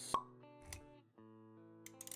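Intro music with held notes, punctuated just after the start by a short sharp pop sound effect, the loudest moment, and a soft low thud a little under a second in.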